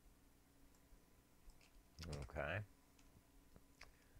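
A few faint, separate computer clicks as code is edited, with one short spoken word about halfway through.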